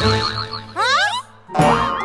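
Cartoon sound effects over children's background music: a warbling tone, then a springy boing that swoops up and back down about a second in, and a sudden hit with another wobbling tone near the end.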